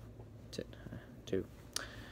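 A pause in a man's talk: faint mouth clicks and one brief soft murmur over a low steady hum.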